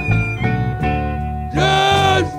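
Chicago blues band playing, electric guitar to the fore over bass and drums, with a held, bending note near the end.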